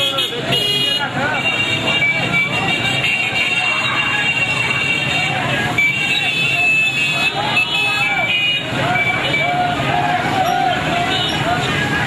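Busy street din from a slow-moving crowd of motorcycles and cars: engines running, horns tooting, and many raised voices over the top.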